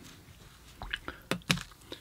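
A handful of short, sharp clicks and taps, about five of them spread over the second half.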